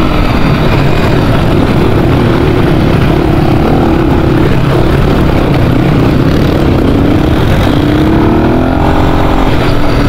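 Dirt bike engine running while riding, heard loud and steady through a helmet-mounted camera along with the rush of riding; the engine note rises near the end.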